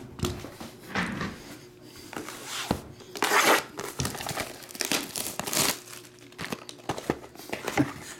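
Plastic shrink wrap crinkling and tearing as it is stripped off a cardboard trading-card box, in irregular bursts of rustling.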